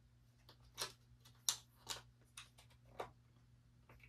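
Faint, irregular clicks of fingers prying at a small, stiff plastic piece on an electric bass guitar's body, about half a dozen over a few seconds, with a faint steady low hum underneath.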